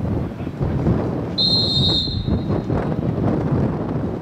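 Referee's pea whistle, one short blast about a second and a half in, signalling that the free kick may be taken. Wind buffets the microphone throughout.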